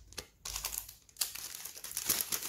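A clear plastic bag and paper cards crinkling and rustling as they are handled, with a few sharp clicks.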